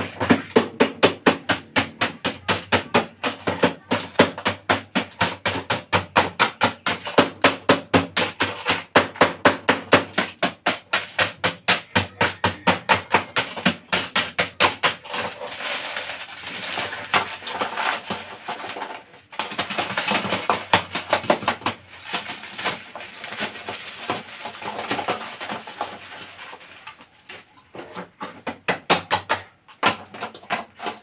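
Ice in a plastic bag being pounded to crush it, in a fast even run of sharp strikes at about two to three a second. Around halfway the strikes give way to irregular crunching and rattling as the broken ice is packed into the tub around the ice cream freezer's canister.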